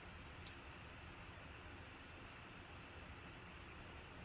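Near silence: faint room hiss with a few soft clicks from plastic card holders being handled, mostly in the first second and a half.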